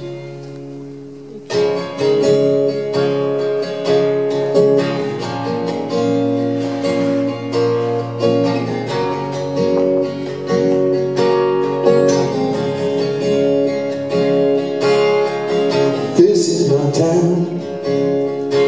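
Steel-string acoustic guitar strummed in the instrumental opening of a song, with rhythmic strokes over ringing chords. A low note rings alone at first, and the strumming comes in about a second and a half in.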